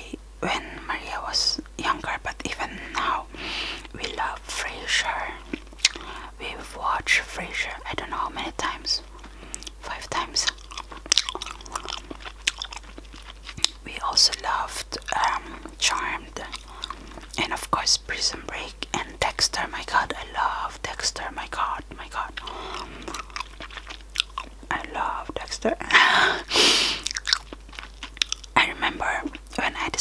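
Gum chewed close to the microphone with the mouth open: a steady run of mouth clicks and smacks, with breathy whisper-like sounds in between and a louder breathy hiss near the end.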